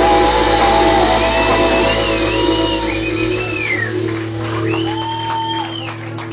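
A live band's song ending: held guitar and keyboard notes ring on, the bass and drums drop away about three seconds in, and whistles and shouts come from the audience.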